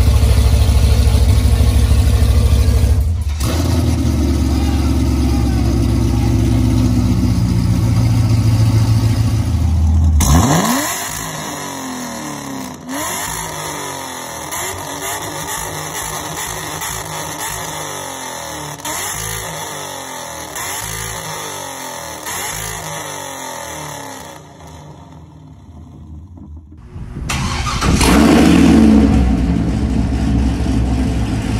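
Chevrolet Corvette C6 V8 exhaust heard from behind the car: loud and deep while idling with small revs for about the first ten seconds. Then comes a quieter stretch of revs rising and falling, and near the end a loud rev.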